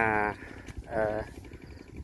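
Speech: a voice says two short phrases, one at the start and one about a second in, with a low outdoor background between them.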